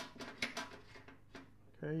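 Several light metallic clicks as a metal shaft is slid and worked in its bracket on an Edison Diamond Disc phonograph's mechanism, most of them in the first half second and one more a little past the middle.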